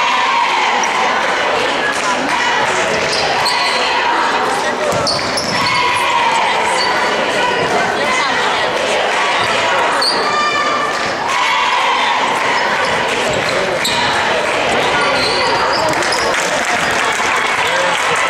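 Basketball bouncing on a hardwood gym court, with people's voices echoing through the large gym.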